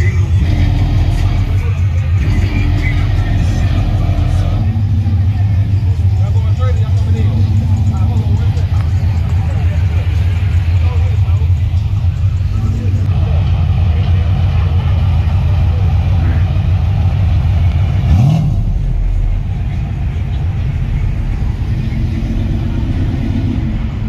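Cars running at a car meet over loud, bass-heavy music, with one engine revving up briefly about 18 seconds in.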